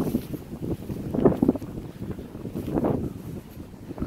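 Wind buffeting the microphone in gusts, a low rumble that swells strongly about a second in and again near three seconds.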